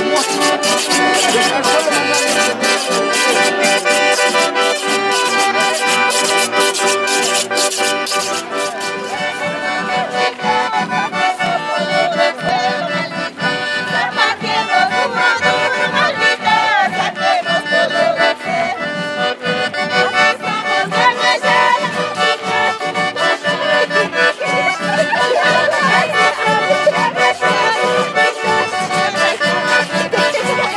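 Accordion and strummed acoustic guitars playing a traditional Andean San Juan tune, with a steady strummed beat.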